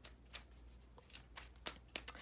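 Tarot deck handled and shuffled in the hands: a few faint, sharp card snaps spread through the two seconds.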